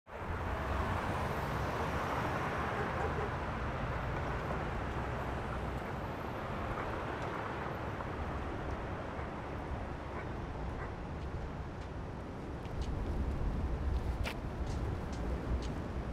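Roadside outdoor ambience: a steady low rumble of traffic, with scattered short clicks of footsteps on pavement in the last few seconds.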